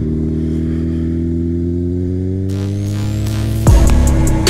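Honda CBR600RR's inline-four engine pulling under full throttle, its pitch rising steadily as the bike accelerates hard. Near the end loud music with a heavy drum beat cuts in over it.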